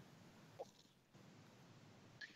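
Near silence: faint room tone, with one brief faint sound about half a second in.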